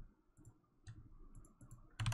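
A few faint, scattered clicks of a computer keyboard and mouse in near silence, the sharpest one near the end.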